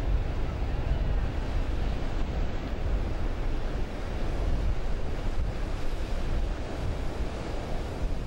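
Ocean surf breaking, a steady rushing noise, with wind buffeting the microphone.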